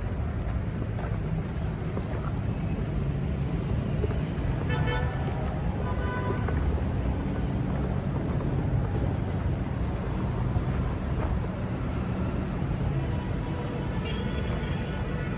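Road traffic with a steady low rumble. A car horn toots briefly about five seconds in, and once more about a second later.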